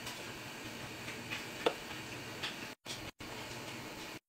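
Faint steady hiss of a pot of beef broth boiling on the stove, with a few soft ticks and pops, the clearest about one and a half seconds in. The sound cuts out briefly twice near the end.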